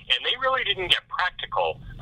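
Speech only: a man talking over a telephone line, the sound narrow and thin.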